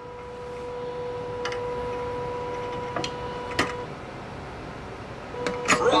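A steady high electrical whine with a few sharp clicks from an Arduino-controlled animatronic toilet as its routine starts up. The whine stops a little past halfway and comes back briefly near the end.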